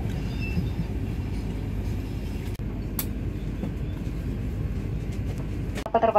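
Steady low rumble inside the cabin of a parked turboprop airliner, with a single sharp click about three seconds in.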